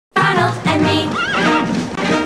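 Commercial music starting suddenly, with a horse whinnying over it about a second in.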